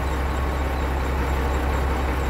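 A semi-truck's diesel engine idling, a steady low rumble.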